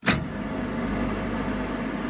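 Synthesized electronic intro sound: a sharp hit, then a steady wash of noise over a low hum.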